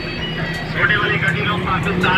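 A motor vehicle engine running close by with a fast, even low throb, with the voices of people talking in the background.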